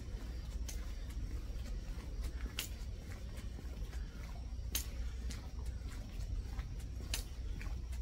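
A hiker walking through a tunnel: a sharp tap about every two seconds over a low steady rumble.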